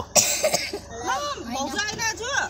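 Voices inside a crowded van: a short harsh, breathy burst just after the start, then high-pitched chatter from children and women.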